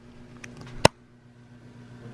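Steady electrical hum from the room's lights, with one sharp click a little under a second in.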